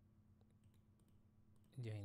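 A few faint computer mouse clicks in near silence.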